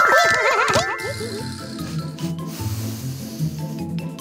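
Cartoon bunny characters' high, wavering squeaky calls for about the first second and a half, over light background music that continues alone after that.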